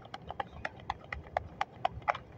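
Tarot cards being shuffled and handled, giving light, irregular clicks and snaps at about four a second.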